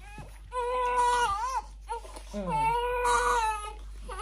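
Newborn baby crying while being bathed: two wails of about a second each with a short catch of breath between them.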